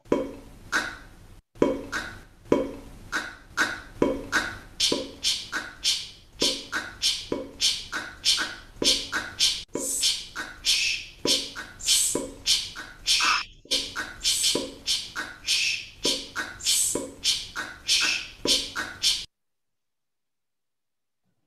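Voiceless consonant sounds — /p/, /ch/, /s/ and /k/ — made by a mouth over and over in quick rhythmic succession, about two to three a second, as short pops and hisses. They stop suddenly shortly before the end.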